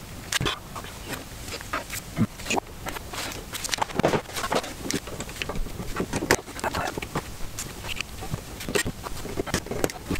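Irregular small clicks and scrapes of a fine screwdriver or pick and fingers working on the plastic odometer gear mechanism of a BMW E28 instrument cluster, prying at a gear sleeve that is stuck on its shaft.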